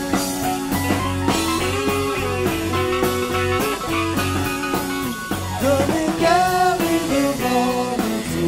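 Live rock band playing, with an electric guitar carrying melodic lines over bass and drums.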